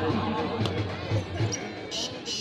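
A volleyball struck by a player's hand: one sharp smack about a third of the way in, over crowd noise.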